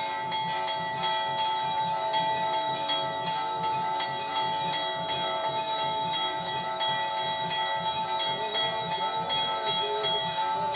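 Temple bells rung continuously during aarti, struck so rapidly that their tones overlap into one steady, many-toned ringing, with a rapid low beat underneath.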